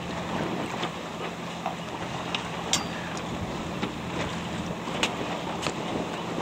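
Wind buffeting the microphone over choppy water slapping against a hull, with a few sharp splashes.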